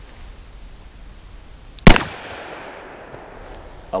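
A single shot from a Smith & Wesson Model 637 snub-nosed .38 Special revolver with a 1 7/8-inch barrel, firing a hot Buffalo Bore +P 110-grain copper hollow point, about two seconds in. A short echo trails off after the report.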